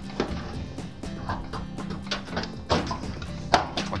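Background music, with a few light knocks as a sheet-metal top cover is set down onto the water still's cabinet, the sharpest about three and a half seconds in.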